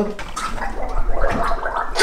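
A man gargling in his throat with his head tipped back, a rough, continuous throaty sound, reacting to the burn of a very hot chili he has just tasted.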